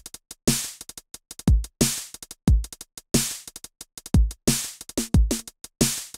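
Roland TR-909 drum kit playing a programmed beat: kick, snare and clap hits with a fast run of closed hi-hats between them. The hi-hats have been compressed to double time while the kick and snare keep their original pattern.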